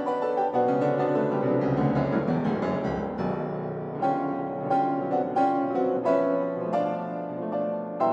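Fazioli grand piano played solo. A blurred run of notes over a held bass gives way, about four seconds in, to separate struck chords, several a second.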